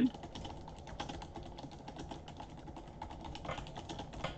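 Typing on a computer keyboard: a quick, continuous run of keystroke clicks as a sentence is typed out.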